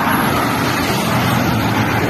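Street traffic: a car driving past close by, with tyre and engine noise making a steady rush.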